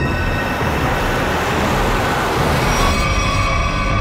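A car speeding past, a loud rush of engine and road noise that dies away about three seconds in as tense background music comes back.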